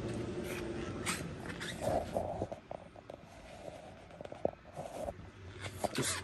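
Faint handling noise as a handheld camera moves around a car's interior: scattered small clicks and rustles, with two short sniff-like puffs about two and five seconds in.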